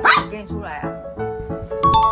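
A Maltese barking twice, the first bark the loudest, over background music. A short chime-like sound effect comes in near the end.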